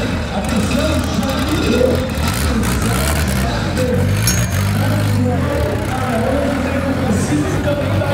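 Turbocharged Volkswagen Santana 4x4 drag car's engine running at low revs as the car rolls slowly toward the start line, its pitch rising and falling a few times in the middle, over crowd voices.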